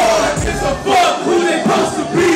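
Several voices shouting together over a live hip hop beat; the beat's bass drops out about a second in, leaving the shouting.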